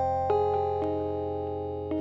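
Vintage electric piano preset of the Double Scoop software synth playing a slow lo-fi jazz chord on its own, its held notes slowly fading as a few more notes join one by one.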